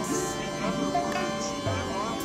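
Dense, layered music: many tones sounding over one another, some holding steady and some sliding in pitch, with no break.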